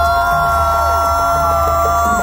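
Live drumming with a high voice holding one long, steady note above it.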